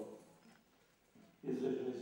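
A man's voice starting to speak about one and a half seconds in, the first word drawn out; a brief voiced sound at the very start.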